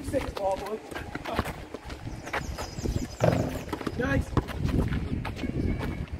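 A basketball bouncing on a concrete court in uneven thuds, with players' shouts and voices in between.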